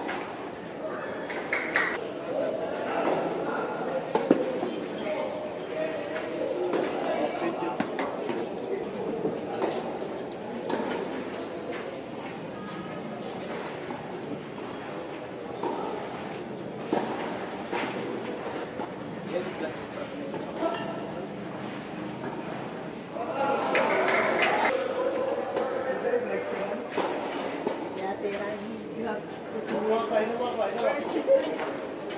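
Tennis balls struck by racquets during a doubles point, heard as sharp pops a few seconds apart, over the continuous chatter of spectators' voices, which swell briefly near the end. A steady thin high whine runs underneath throughout.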